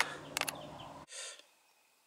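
Faint outdoor background noise with a couple of short clicks. About a second and a half in, it cuts off to dead silence.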